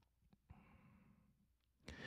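Near silence with a man's soft breathing at a close microphone and a faint mouth click; a louder intake of breath begins near the end.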